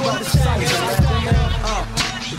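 Hip hop track: a beat with heavy bass-drum hits and a rapped vocal over it.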